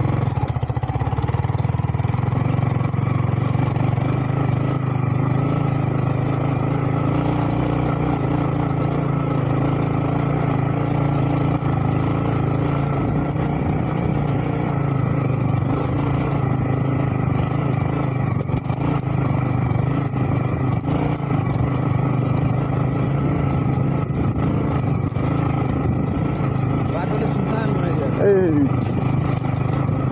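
Yamaha MT-15's single-cylinder engine running at steady low revs as the motorcycle rides slowly over a rough, stony dirt track. A voice is heard briefly near the end.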